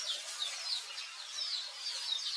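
Quick series of short, high chirping calls, several a second, over a steady hiss.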